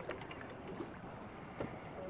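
Low, steady wind noise on the microphone, with a few faint clicks near the start and again about one and a half seconds in.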